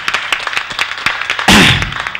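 A quick, irregular run of sharp clicks or claps. About one and a half seconds in comes a loud, noisy burst with a falling voice-like tone.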